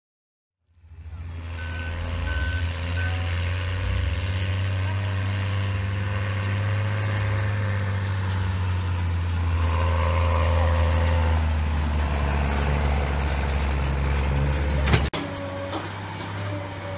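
Tractor diesel engine running steadily with a deep drone, fading in about a second in, with three short high beeps soon after. Near the end a sharp click, after which a lighter machine engine sound follows from a wheel loader working a silage pit.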